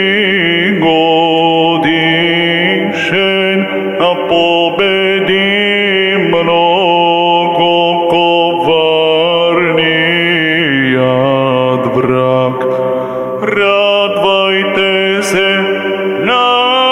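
A male cantor chants an Orthodox Matins hymn through a microphone in long, flowing melodic lines. Beneath the melody a steady low note is held, and it drops lower about eleven seconds in.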